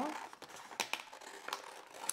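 Scissors cutting through a sheet of transfer tape and vinyl, the plastic sheet crinkling as it is handled, with a few sharp snips.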